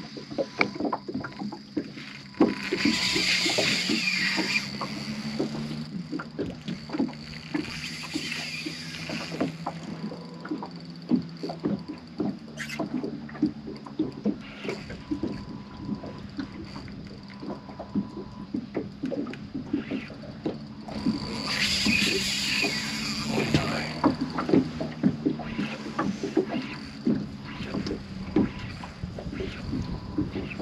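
Sounds of a fishing boat at rest on the water: a steady low hum under many small ticks and knocks, with three short rushing noises, a few seconds in, about eight seconds in and around twenty-two seconds in.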